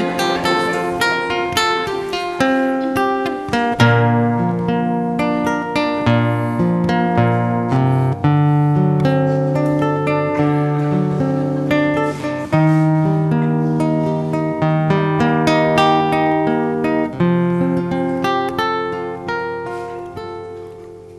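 Solo acoustic guitar playing an instrumental passage: a plucked melody over a moving bass line, notes ringing on, with the last notes fading away near the end.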